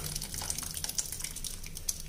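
Thick mashed cooked dal pouring from a pressure-cooker pot into simmering sambar in a pan: soft wet plops with many small pops and ticks.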